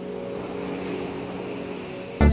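An engine running steadily: a low, even hum with a few steady tones.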